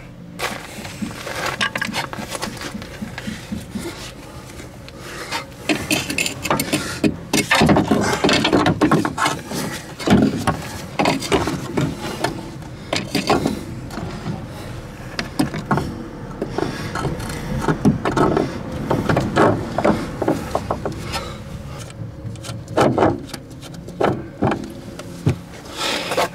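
Irregular metal knocks, clunks and scraping as a front suspension strut with its coil spring is worked up into the wheel arch under the upper control arm and fitted into place.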